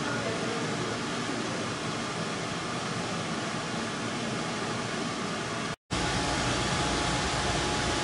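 Steady, even hiss of background noise of the kind a ventilation fan or running machinery makes, cut off for an instant about six seconds in and then going on with a little more low rumble.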